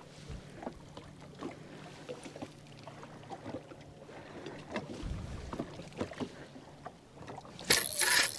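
Water lapping against a fishing boat's hull, with scattered small knocks and clicks and a faint steady low hum; a louder rush of noise comes in near the end.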